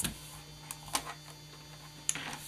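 Faint handling of paper strips on a plastic paper trimmer: a short knock at the start, then two soft ticks about a second in, over a steady low hum.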